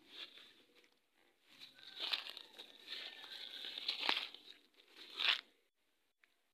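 A plastic food wrapper crinkling and rustling on the ground as a cat eats from it and pushes at it, in uneven bursts that are loudest about two, four and five seconds in.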